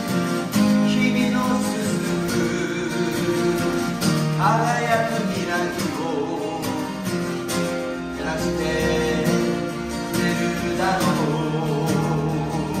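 Two acoustic guitars playing together in a passage without lyrics, chords ringing under a wavering melody line.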